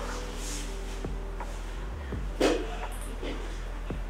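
Cloth bag of lottery balls rustling as a hand reaches in to draw one, over a steady low hum. A short, louder rustle comes about two and a half seconds in.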